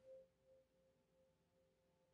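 Near silence, with a faint steady tone underneath.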